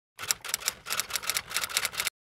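Typewriter typing sound effect: a quick run of about a dozen key strikes, roughly six a second, that stops abruptly.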